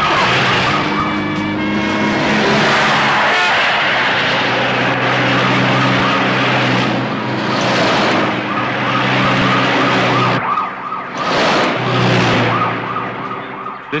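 A police siren pulsing rapidly over cars driven hard, with rushes of noise as a car speeds past, loudest near the end.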